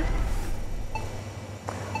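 Newscast station-logo transition sound effect: a low rumble with a noisy swoosh that fades away over about a second and a half.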